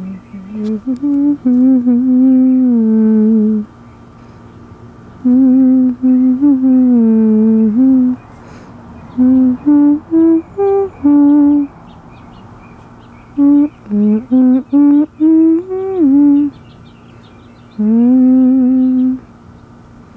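A person humming a slow tune, in phrases of a few seconds with short pauses between them and a run of shorter, quicker notes in the middle.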